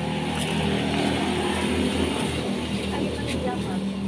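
A nearby engine running steadily at idle with a low, even hum.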